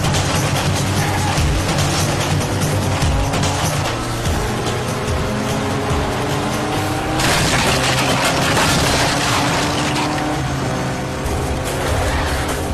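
Dramatic film background score over a vehicle chase, mixed with motorcycle and jeep engine sounds whose pitch rises slowly. A louder rushing surge comes about seven seconds in and lasts a few seconds.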